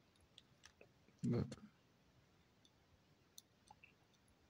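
Faint scattered clicks from jumper-wire connectors being handled and pushed onto the header pins of a BTS7960 motor driver board. A short, louder low sound comes about a second in.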